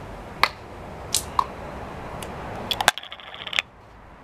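Cooking oil bottle and deep fryer being handled while topping up the oil: a few sharp clicks and taps over a steady background hiss. About three seconds in, the background briefly drops out, leaving a thin buzz.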